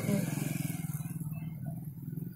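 A small engine running steadily with a fast, even pulse, low in pitch.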